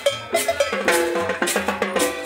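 Live Latin dance music from a street band: a steady percussion-led beat of congas and timbales with cowbell strokes, over a bass line and held melody notes.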